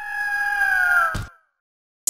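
A single long bird cry, its pitch falling slightly over about a second and a half. There is a click as it starts and another just before it fades out.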